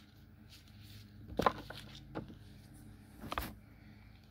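Tarot cards being handled on a table: a few short taps and rustles, the loudest about a second and a half in and another near the end, over a faint steady hum.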